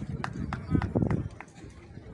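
A quick run of sharp clicks or taps, about half a dozen irregularly spaced over the first second and a half, over low murmuring voices.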